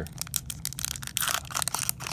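Foil wrapper of a Panini Mosaic football card pack crinkling and tearing as it is pulled open by hand, a quick run of irregular sharp crackles.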